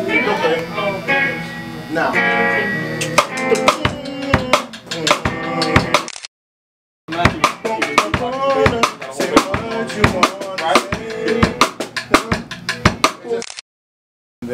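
Band music with a drum kit beating out sharp hits over bass and other instruments, broken by two sudden drops to silence: one about six seconds in and one near the end.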